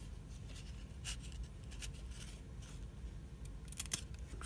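Hockey trading cards being flipped through by hand: faint slides and scrapes of card stock against the stack, then a quick cluster of sharp clicks near the end.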